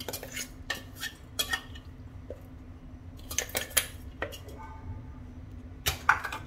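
Metal spoon scraping and clinking against a steel mixer-grinder jar and a bowl, in about six short bursts of clatter spread over the seconds, as ground dry-fruit powder is spooned out.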